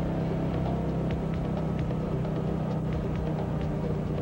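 A steady low drone with faint, scattered ticks above it.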